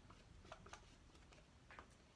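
Near silence, with a few faint, light clicks and scratches from a serrated rib scoring the slip-wet clay rim of a slab-built cylinder.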